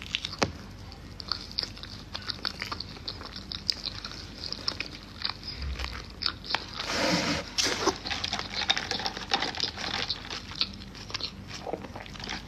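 Close-up eating sounds of a chicken wrap: biting and chewing, with many small wet crackles and mouth clicks, and a louder burst about seven seconds in.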